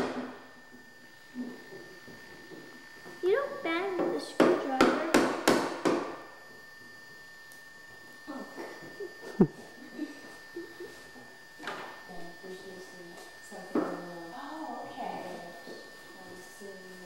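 Plastic toy hammer knocking on a plastic toy workbench: a quick run of about five sharp knocks around five seconds in, then one more sharp knock a little before the ten-second mark.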